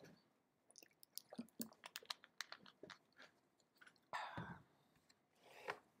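Faint, scattered clicks and crackling rustles of objects being handled, with a louder rustle about four seconds in.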